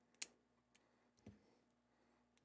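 Near silence broken by a few small clicks and a soft knock from a knife working at the tape on a cardboard card mailer. One sharp click comes just after the start, and a softer knock a little past a second in.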